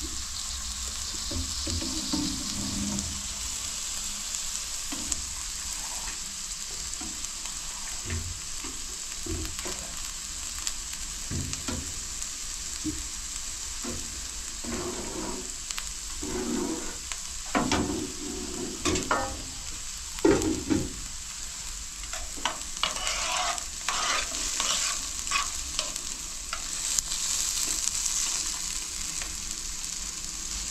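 Food sizzling steadily in a frying pan on a gas stove, while a metal ladle stirs and scrapes in a pot. The ladle's knocks and scrapes against the metal come thickest in the middle and later part.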